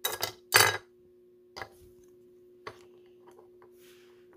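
Hard plastic card case knocking sharply twice against a wooden tabletop as it is set down, followed by a couple of faint clicks.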